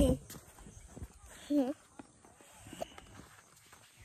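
A brief voiced sound, one short wavering call or hum, about one and a half seconds in, with faint clicks of handling around it; otherwise quiet.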